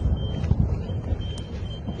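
Wind buffeting the microphone in an uneven low rumble, with a footfall on loose earth about half a second in.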